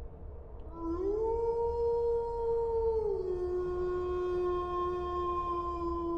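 A single long animal howl. It starts about a second in, glides up to a held note, then drops to a lower note about three seconds in and holds there.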